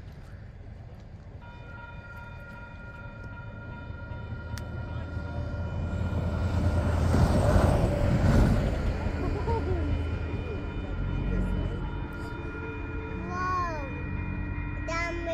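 Railroad grade-crossing warning bell starts about a second and a half in and rings on steadily, the crossing signal activating for an approaching train. In the middle a broad rushing swell with a low rumble rises to a peak and fades.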